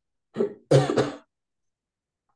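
A woman clears her throat: a short burst about a third of a second in, then a longer, louder one.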